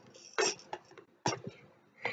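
A plastic maraca knocking and briefly rattling against a plastic tray: two sharp knocks, about half a second and about 1.3 s in, with a few fainter clicks between them.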